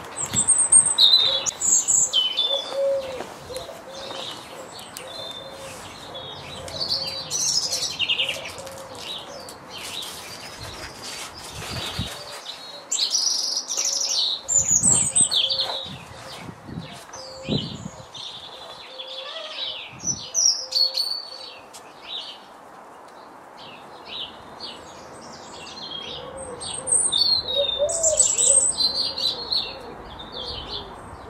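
Garden birdsong: several small birds chirping and singing in short, overlapping phrases, louder in patches.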